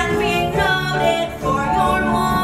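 Live musical-theatre song: voices singing over instrumental accompaniment, the notes changing every fraction of a second.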